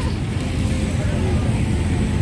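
A generator engine running steadily, a low, even rumble with no change in pitch.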